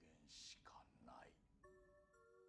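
Faint spoken Japanese dialogue, then soft music of several held notes that begins near the end.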